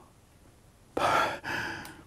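A man's heavy sigh about a second in, breathed out in two parts.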